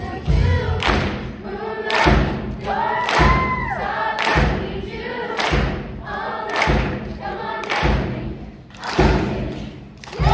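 A large youth show choir singing to a backing track, with a heavy thumping beat about once a second, the last thump a little before the end.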